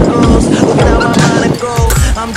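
A hip hop song with a steady beat. Over it, stunt-scooter wheels make a rough rolling rush across a skatepark ramp, which dies away about a second and a half in.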